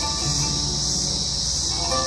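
Loud, steady high-pitched buzzing of cicadas, with a few sparse sustained notes from a live oud and pipa duo underneath.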